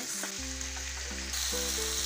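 Sliced bitter gourd going into hot oil in a wok and sizzling, the sizzle growing louder and brighter a little past halfway.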